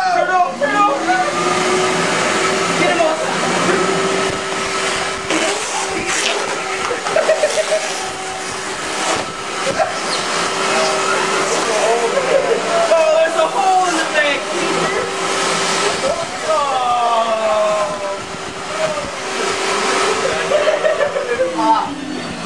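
Shop vac motor switching on and spinning up about half a second in, running steadily with a whine and a rush of air for about twenty seconds, then winding down near the end as it is switched off.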